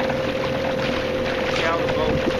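A boat's motor running steadily with a constant whine, under wind rushing on the microphone.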